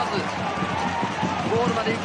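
A man commenting on a football match, heard over a steady background of stadium crowd noise.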